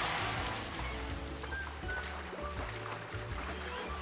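Background music with steady low notes and a few short higher tones. Under it, in the first second, is a hissing splash of water sprayed from an elephant's trunk, which then fades out.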